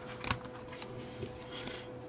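Quiet room tone: a faint steady hum, with a couple of light clicks about a third of a second in and again just past one second.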